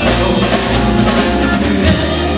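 Live band playing with drum kit, electric bass and horns (trumpet, saxophones, trombone), the drums prominent with a steady beat.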